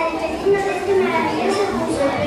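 Many children's voices at once in a large hall, several overlapping without a break.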